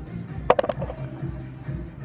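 Background music with a steady bass beat. About half a second in, a quick cluster of three or four sharp clicks cuts through it.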